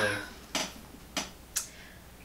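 Three light clicks, about half a second apart, as a child's rolling suitcase is lifted and handled.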